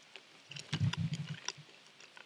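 Close-up mouth sounds of a man chewing a wintergreen leaf: about half a second in comes a low, rough hum with faint wet clicks, lasting about a second.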